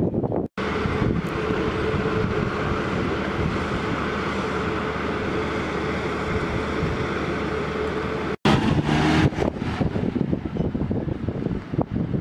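A vehicle engine running steadily, with wind on the microphone. The sound breaks off abruptly about half a second in and again at about eight and a half seconds, and after the second break it is rougher and more uneven.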